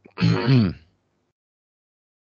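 A man's short vocal sound, like a throat-clearing grunt, falling in pitch and lasting under a second near the start.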